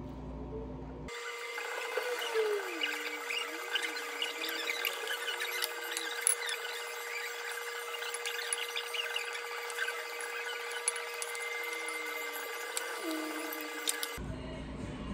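Fast-forwarded eating sounds: a metal spoon clicking and scraping on a ceramic plate in quick, dense ticks, with a few wavering, raised-pitch tones.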